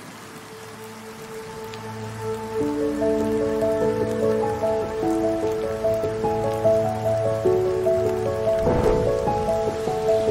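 Soft ambient background music: sustained, overlapping notes of a slow melody that swell in over the first few seconds and then hold steady, over an even hiss like rain, with a brief noisy swell near the end.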